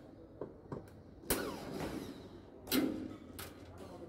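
Cordless drill driver run in two short bursts on the grille screws of a speaker cabinet, its pitch falling away each time the trigger is let go, with a few light clicks of the bit and screws between.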